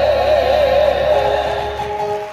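A woman's voice holding a long final note with a wide, wavering vibrato over a sustained low accompaniment chord, as a gospel song closes; the music dies away near the end.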